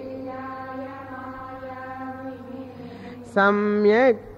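Sanskrit verse chanting: a quieter held chanting voice for about three seconds, then a louder woman's voice takes up the chant near the end with long, steady held notes.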